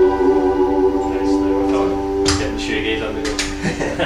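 Strat-style electric guitar with single-coil pickups, played through an amp: a held chord rings out and stops just before the end.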